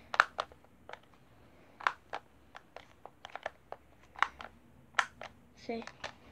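A dozen or more irregular sharp clicks from a pistol's mechanism being worked by hand, with the safety set so that it does not fire.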